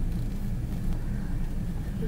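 Car interior noise while driving: a steady low engine and road rumble.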